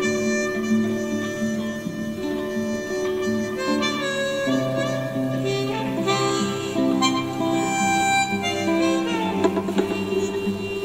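Instrumental blues on harmonica and guitar, the harmonica holding long notes over the guitar accompaniment.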